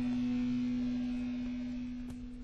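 A steady low hum held on one pitch, fading slightly toward the end.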